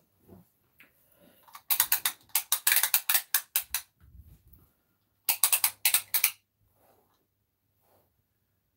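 Retractable tape measure being pulled out, a fast run of ratcheting clicks for about two seconds, then a second, shorter run about halfway through.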